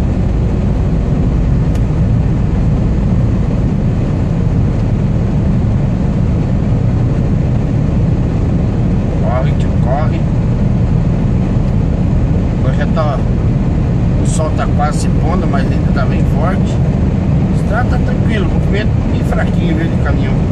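Steady low drone of a Scania R440 truck's diesel engine and road noise heard inside the cab while cruising on the highway, with brief voice-like sounds scattered through the second half.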